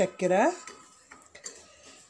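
A metal spoon faintly scraping and clinking against a steel saucepan as sugar is stirred, melting for caramel.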